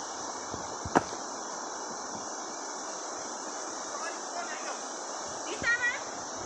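A steady, high insect drone from the forest, with a sharp click about a second in and a few soft footfalls on the stony track. A short call from a voice comes near the end.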